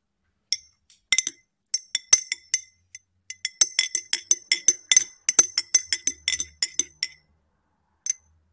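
A spoon stirring tea in a fluted glass, clinking against the inside of the glass with a bright ringing tone. A few scattered clinks come first, then a quick, even run of about four clinks a second that stops about a second before the end.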